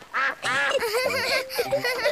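Cartoon ducks quacking, a quick run of several short, wavering quacks in answer to a question.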